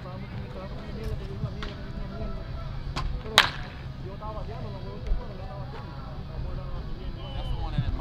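Baseball bat cracking against a pitched ball in a batting cage: one sharp crack about three and a half seconds in, just after a lighter click, with a few fainter knocks elsewhere. Players' voices are heard faintly beneath it.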